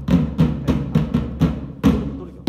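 A group of drummers on bass drums and smaller drums beating a steady, even rhythm, about three strokes a second.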